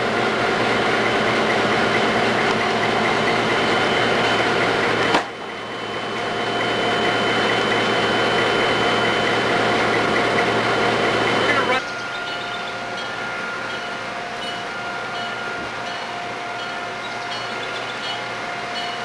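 Diesel locomotive engine idling steadily close by. The sound breaks off abruptly about five seconds in and again near twelve seconds, after which the idle carries on quieter.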